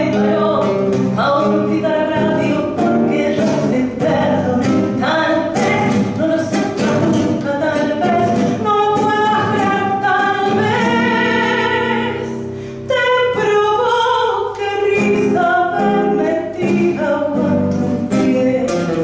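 A woman singing a tango into a microphone, accompanied by a nylon-string classical guitar; she holds one long note a little past the middle, with a brief drop in level just after it before the singing resumes.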